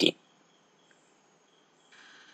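Near silence after the tail of a spoken word, with faint, high-pitched insect chirping coming and going in the background.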